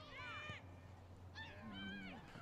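Faint, distant high-pitched shouts of voices calling across a football field, heard in two short bursts: one just at the start and one near the end.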